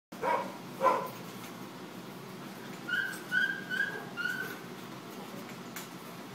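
Dogs at play: two sharp barks in quick succession at the start, then four short, high whining notes about three seconds in.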